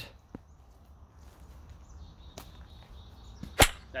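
A golf chip shot off a turf hitting mat: one sharp, loud click about three and a half seconds in, with a couple of faint taps before it over quiet outdoor background.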